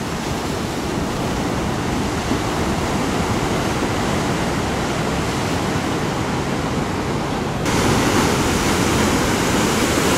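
Ocean surf breaking and washing, a steady rushing noise with no tones in it. About three-quarters of the way through it suddenly turns louder and hissier.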